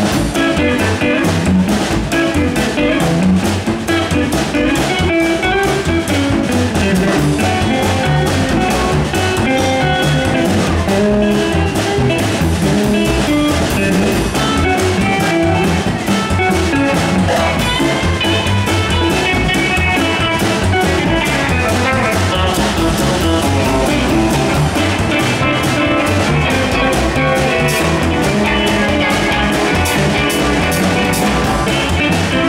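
Live rockabilly band playing: electric lead guitar and acoustic rhythm guitar over plucked upright bass and a drum kit, running at a steady level with no break.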